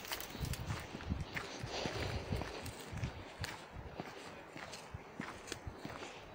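Footsteps walking down a forest path over dry leaf litter and dirt, irregular soft thuds with small clicks, roughly two steps a second.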